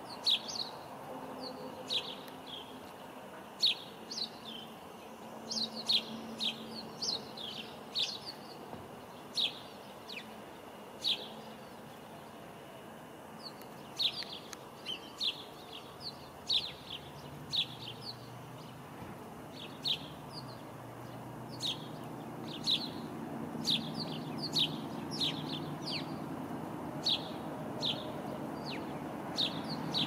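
Songbird chirping: many short, sharp, high calls in quick irregular runs, with a low rumble building in the background from about two-thirds of the way through.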